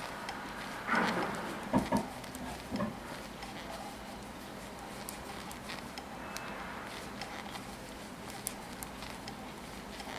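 Metal knitting needles clicking faintly against each other, with the yarn rubbing, as stitches are worked in single rib. A rustle and a few louder knocks come between about one and three seconds in.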